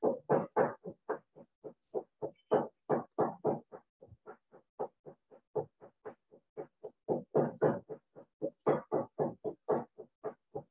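An unwanted background voice coming over the video call from a participant's side: a fast, even string of short syllables, about four or five a second, with no words made out. It is a little softer in the middle.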